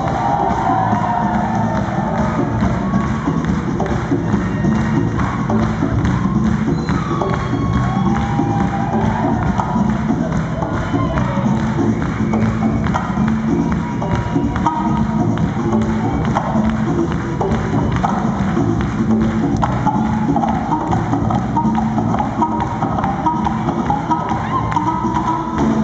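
Live Afropop band music at full volume, driven by fast, dense hand and stick percussion including a talking drum, with voices singing over it.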